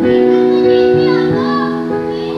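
A woman singing karaoke over a piano-led backing track, her voice bending in pitch on a held note between sung lines.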